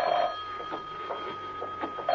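Telephone ringing in the British double-ring pattern. A ring ends just after the start, there is a pause of under two seconds, and the next ring begins at the very end.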